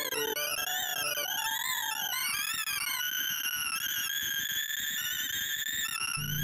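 Sorting-visualizer synth tones: rapid electronic beeps whose pitch tracks the array values being compared and written, sweeping up and down in quick zigzags. About halfway through they settle into a higher, steadier run as the merge sort nears completion.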